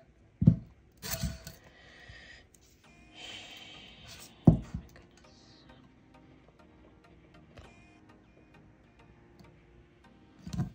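Handling sounds of a glitter tumbler and adhesive vinyl strips on a craft table: two hard thumps, one about half a second in and one about four and a half seconds in, with scratchy rustling between them.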